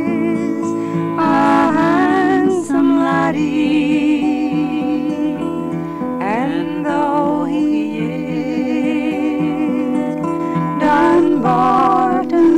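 Live traditional folk song: a woman singing long held notes with vibrato over acoustic guitar accompaniment.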